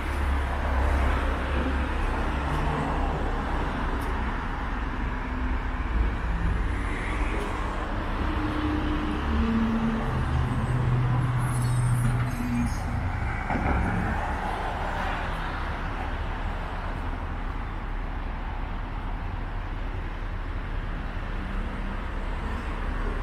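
Road traffic: cars driving on an adjacent city road, a steady rush of tyre and engine noise, with a lower engine hum rising and fading in the middle.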